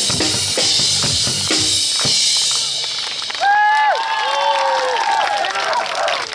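Drum kit played over a pop backing track, with steady kick and snare hits and a cymbal wash. The music stops about three seconds in, and a few voices call out in long, drawn-out shouts.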